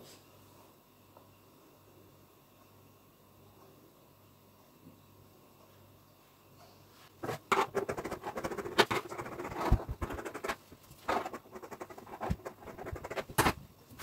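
About seven seconds of near silence, then tulle net being handled and smoothed on a hard floor: irregular rustles, scratches and sharp clicks.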